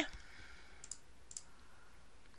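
Two faint computer mouse clicks about half a second apart, over low background hiss.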